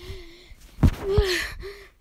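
Two sharp thumps about a third of a second apart, about a second in, with a boy's pained gasping cry over the second one, as if he has been hit in the stomach. A short 'uh' comes before them.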